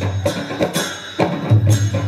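Newar dhime drums and brass hand cymbals playing live Lakhe dance music: a quick, steady beat of drum strokes and cymbal clashes over a recurring low boom.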